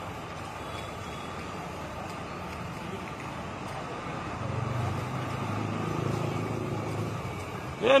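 Steady road traffic noise, with one vehicle's engine rumbling louder for the second half.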